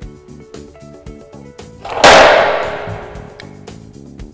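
Braun wheelchair lift's roll stop flap dropping open onto the concrete floor: one loud metal slam about two seconds in that rings away over a second or so, heard over quiet background music.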